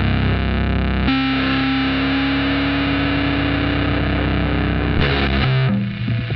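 Black metal music: heavily distorted electric guitar holding sustained chords, changing to a new chord about a second in and shifting again near the end.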